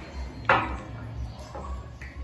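Kitchenware handled on a glass tabletop: one sharp knock about half a second in, then faint handling noise, over a low steady hum.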